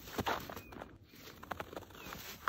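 Paws of a small Japanese Chin–Chihuahua mix dog crunching and scuffing in snow as it pounces and hops about: an irregular run of short crunches.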